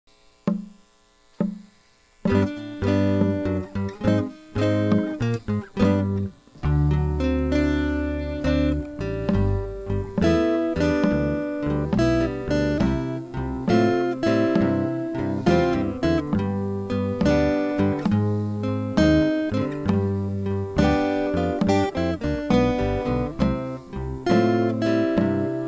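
Steel-string acoustic guitar playing a blues instrumental intro of picked single notes and chords. Two lone notes sound in the first two seconds, then the playing runs on continuously from about two seconds in.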